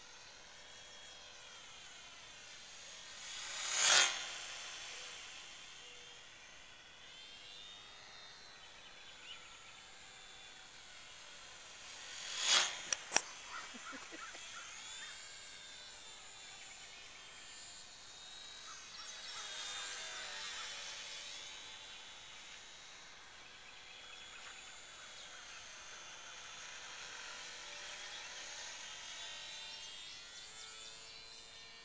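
HobbyZone Champ RC plane's small electric motor and propeller whining, its pitch rising and falling as the plane circles. The sound swells to its loudest twice, about four seconds in and again around twelve seconds, with two sharp clicks just after the second swell.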